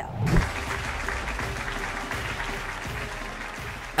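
Audience applauding steadily over background music, with a brief low thump at the start.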